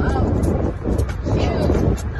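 Children's voices yelling and carrying on in a car cabin, over a steady low rumble on the microphone.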